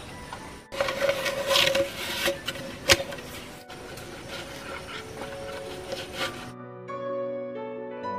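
Rubbing and scraping of rope being wrapped and pulled tight around a bamboo tube, with one sharp knock about three seconds in, over background music. For the last part only the music is heard.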